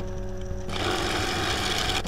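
Wood lathe spinning an out-of-round river sheoak bowl blank, with a bowl gouge cutting into it in a rhythmic, interrupted cut; the hiss of the cut comes in about two-thirds of a second in over a low, steady hum. The beat of the interrupted cut is the sign that the blank is still not round.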